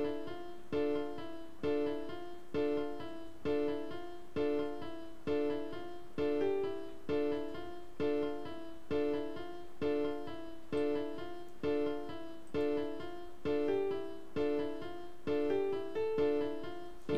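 FL Keys software piano playing a looping melody of short repeated notes at 132 BPM, with a three-note chord struck about every second and single notes between.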